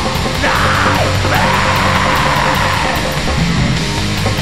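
Black metal song: a dense wall of distorted guitars and drums under harsh screamed vocals.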